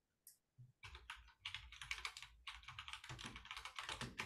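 Faint computer-keyboard typing: a single click near the start, then a quick, uneven run of key presses from about a second in.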